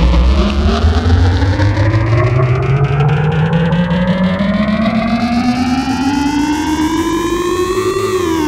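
Synton Fenix 2d analog synthesizer playing one buzzy, harmonic-rich tone that glides slowly and steadily upward in pitch like a siren, then turns and starts falling at the very end, over a steady low drone. The patch runs through the synth's phaser in feedback mode and its delay.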